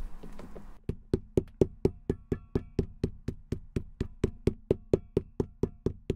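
White-headed mallet rapidly hammering a piece of crepe sole onto the sole of a leather work boot, a steady run of dull knocks at about four a second that begins about a second in.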